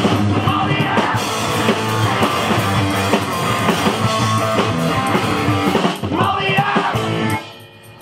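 Punk rock band playing live, with electric guitar and drum kit. The song ends about a second before the end, and the music stops suddenly.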